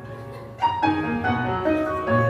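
Piano-led backing music playing sustained chords, with a new chord struck just over half a second in and ringing on.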